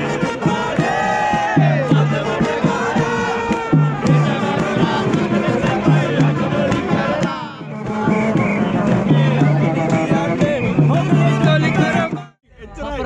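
Papare brass band playing an upbeat tune over a repeating low bass note, with a crowd singing and cheering along. The level dips briefly a little past halfway.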